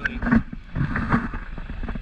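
Wind buffeting the camera's microphone: an uneven low rumble with irregular bumps as the handheld camera is turned.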